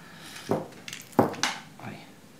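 Seashells clicking and clinking against each other and the work surface as one is picked from a pile: about five short, sharp knocks in under two seconds.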